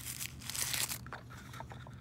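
Tissue paper crinkling as hands pull the wrapping off a small loupe: a soft rustle of small crackles, strongest a little under a second in.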